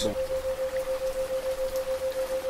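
Steady rain noise under a single continuous pure tone near 528 Hz. The tone's loudness pulses evenly about seven times a second, which is a 7 Hz isochronic tone for theta-wave relaxation.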